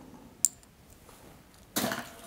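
Mostly quiet hand-work on a plastic model kit: one light, sharp click of small plastic parts about half a second in, then a short rush of noise near the end.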